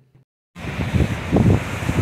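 Wind buffeting the microphone, a loud rumbling gust noise, with sea surf behind it. It starts suddenly about half a second in, after a brief moment of silence.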